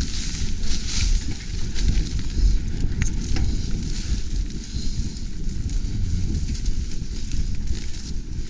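Mountain bike rolling over a dirt singletrack: a steady rumble of tyres and bike rattle, with scattered crackles and clicks as tall grass brushes the bars.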